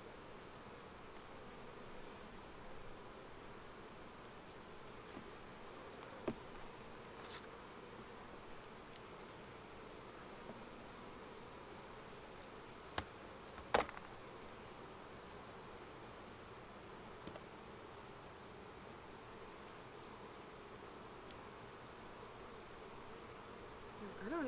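Steady hum of a honeybee colony in an opened hive, with a few sharp knocks, the loudest about fourteen seconds in.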